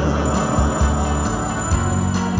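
Instrumental passage of a song's backing track played over the stage sound system, with a steady beat and no singing.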